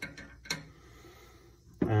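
A few faint clicks, one sharper about half a second in, as a rusted sheet-steel fuel tank is handled, then quiet room tone.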